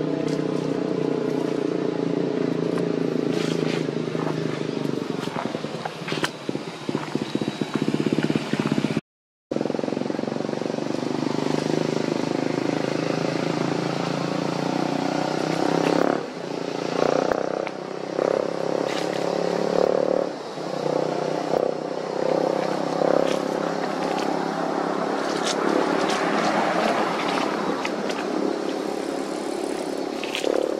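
A motor vehicle engine running steadily, its drone unbroken except for a brief cut to silence about nine seconds in.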